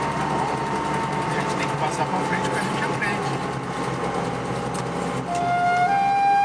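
Lada Niva (VAZ 2121) driving, heard from inside the cabin: steady engine and road noise with a thin whine that slowly sinks in pitch. Music starts to come in near the end.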